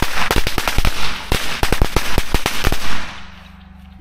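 A string of small firecrackers going off: a rapid, irregular crackle of sharp bangs that sound like bullet shots, lasting about three seconds before dying away.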